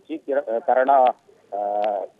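A narrator's voice reading a news report in Odia. It pauses briefly and ends on a drawn-out, steady vowel.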